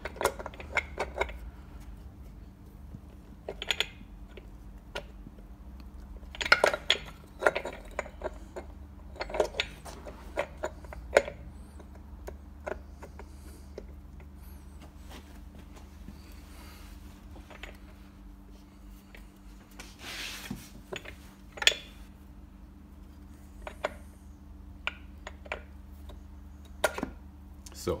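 Scooter gearbox cover being worked by hand onto the transmission housing and into the gear teeth: irregular metal clicks and knocks as it is pushed and shifted into place, with a faint steady hum underneath.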